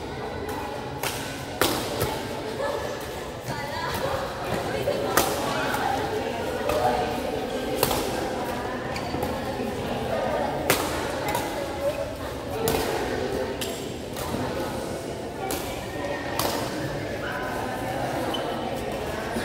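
Badminton rackets striking a shuttlecock during a rally: sharp hits at irregular intervals of one to three seconds, the loudest about five and eleven seconds in.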